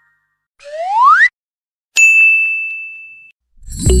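Animation sound effects: a short swoop rising in pitch, then a bright ding that rings on for about a second. Music starts just before the end.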